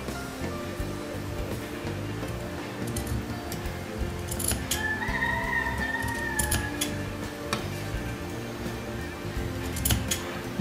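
Background music with a few short, sharp snips of scissors clipping into a fabric seam allowance.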